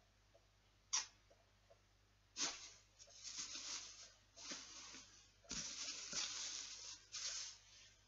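A sharp click about a second in, then plastic sheeting rustling in several bursts as hands move over a box draped in a plastic bag.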